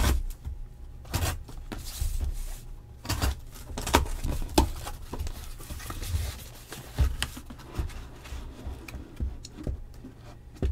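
A sealed cardboard shipping case being cut and opened: packing tape is slit and torn, and there are scraping sounds and irregular knocks as the case is handled and its flaps are pulled back.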